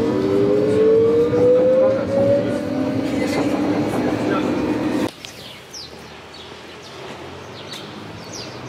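Berlin U-Bahn train pulling away from a station, heard from inside the carriage: the traction motors' whine climbs steadily in pitch over a lower steady hum as the train accelerates. About five seconds in it cuts off abruptly to much quieter street ambience.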